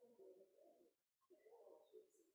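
Near silence: a faint, muffled low murmur of room sound that cuts out briefly about a second in.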